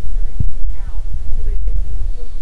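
Wind buffeting the microphone: a loud, steady low rumble, with faint voices underneath.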